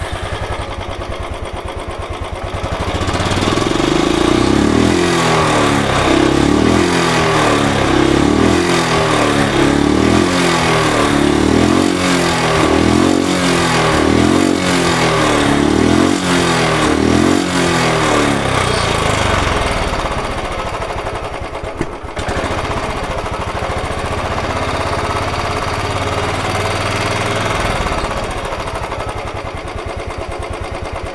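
Royal Enfield Bullet 350 ES single-cylinder engine running through its stock silencer, just started: it is revved in a regular series of throttle blips about once a second for some fifteen seconds, then settles to a steady idle.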